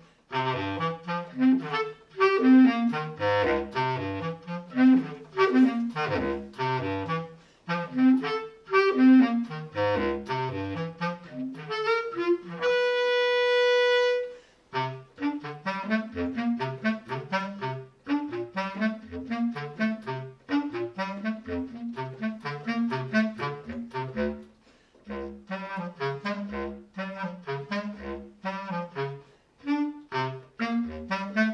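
Bass clarinet played solo: a quick line of short, detached notes in the low and middle register, with one long held higher note about halfway through.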